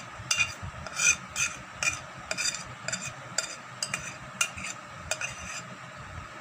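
Metal spoon scraping cake batter from a glass bowl into a metal cake tin, with repeated irregular clinks of the spoon against the glass and the tin.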